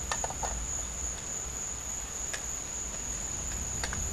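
Insects chirring in one steady high-pitched drone, with a few faint clicks: a cluster just after the start, one in the middle and one near the end.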